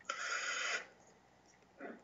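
A single short rasping hiss, lasting under a second, then near silence.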